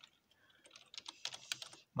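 Typing on a computer keyboard: a quick run of faint keystrokes from about half a second in until just before the end.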